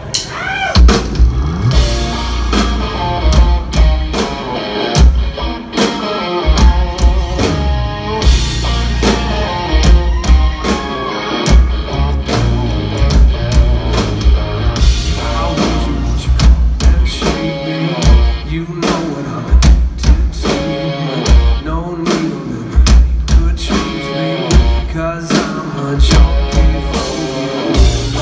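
Live rock band playing loudly: electric guitar over bass guitar and a drum kit with a heavy low-end pulse.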